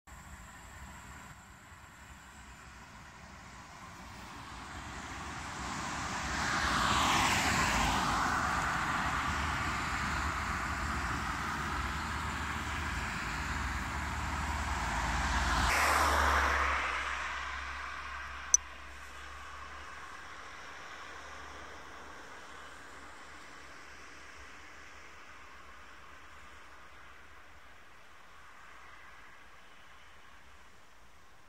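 Road traffic: two vehicles drive past on the road, each swelling up and fading away, the first about seven seconds in and the second about sixteen seconds in. A single sharp click comes a couple of seconds after the second one, and then a fainter steady background hum remains.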